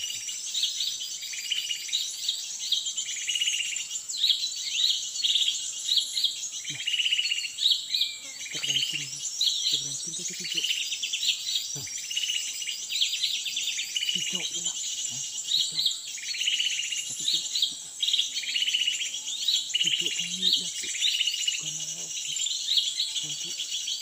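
Songbirds calling over and over in quick chirps and short trills, over a steady high-pitched insect drone.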